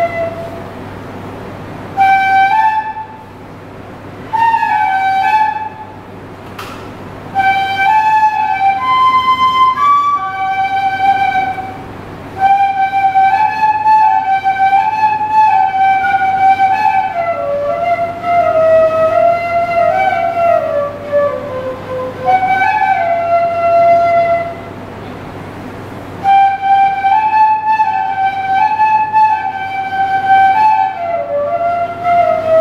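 Solo bansuri (bamboo transverse flute) playing a slow melody in phrases with short breaths between them. It climbs to higher notes around ten seconds in and runs downward near the middle, over a low steady hum.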